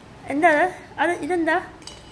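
A high-pitched voice making two short sing-song sounds without clear words. A few light metallic clinks follow near the end, a spoon against a steel tumbler.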